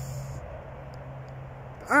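A pause in a man's talk filled by steady background noise with a low hum; his voice returns at the very end.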